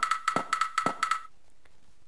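Electronic drum loop previewing in the Transfuser 2 plugin: a quick pattern of short, clicky metallic percussion hits with a high ringing tone on each hit, which stops about a second and a quarter in.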